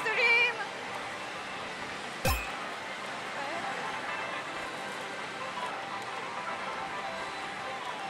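Steady din of a pachislot parlor: a mix of slot-machine sounds and background music, with one sharp knock about two seconds in.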